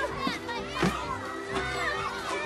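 Background music with sustained low notes under children's voices shouting and chattering.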